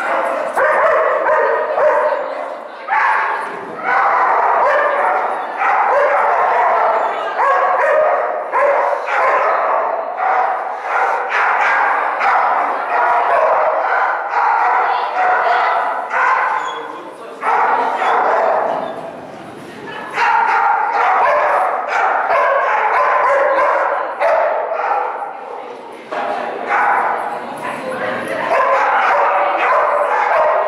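Dog barking and yipping almost without pause, in quick repeated calls, with a brief lull a little past the middle.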